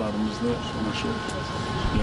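Speech: a voice talking over a steady low outdoor rumble, with a faint constant high tone running under it.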